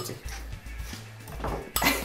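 A metal fork clinking and scraping against a ceramic bowl as guacamole is mixed, with a sharp clink near the end. Background music plays underneath.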